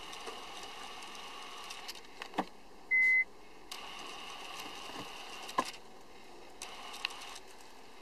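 Clicks of a Kia Sportage R's automatic gear selector being moved, with a single short electronic beep about three seconds in, just after one of the clicks. A faint hiss comes and goes in the background.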